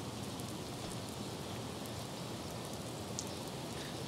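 A steady hiss of outdoor ambient noise, even and rain-like, with a few faint ticks.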